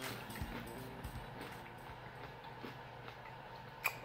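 Faint chewing of a mouthful of flaky whole-wheat pastry patty: soft, irregular mouth and crust noises, with a sharper mouth click near the end.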